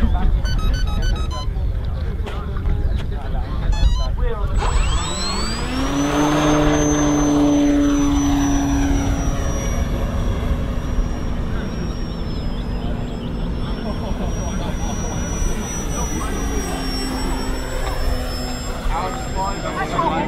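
Radio-controlled model aeroplane's motor and propeller spooling up about four to five seconds in, rising steeply in pitch for the take-off, then holding a steady high whine that wavers a little in pitch as the plane flies, over a steady low rumble.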